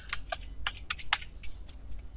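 Typing on a computer keyboard: about ten quick, irregular key clicks as a word is typed.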